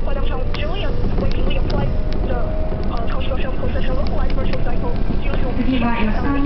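Cabin noise inside a moving Japanese commuter train: a steady low rumble from the running train with a thin steady whine through most of it, and people's voices over it. Near the end a recorded female onboard announcement begins.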